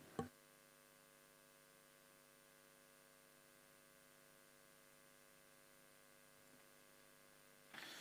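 Near silence with a faint, steady electrical mains hum, and a brief click just after the start.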